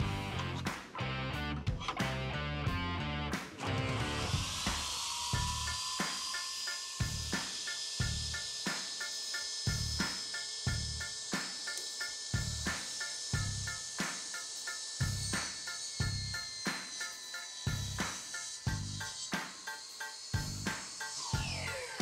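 Maksiwa SC600i 10-inch table saw with an 1800 W motor switched on about four seconds in: a rising whine up to speed, then running steadily while a board is fed through the blade, and winding down near the end. Background music with a steady beat plays throughout.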